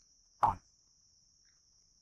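One short spoken word, then near silence with a faint, steady, high-pitched whine.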